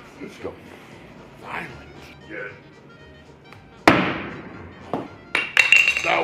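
A thrown axe striking wood with one sharp knock about four seconds in, from a throw that slipped out of the hand. Further knocks follow near the end.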